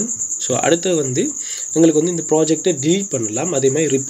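A man talking over a continuous high-pitched trill.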